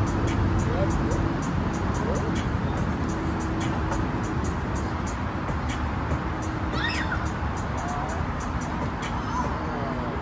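Busy outdoor park ambience: a steady wash of traffic-like noise with distant voices and music, and a faint run of rapid high ticks.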